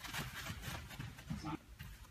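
Quick footsteps and shoe scuffs on artificial turf as two people shuffle and sidestep, with a short voice sound about one and a half seconds in.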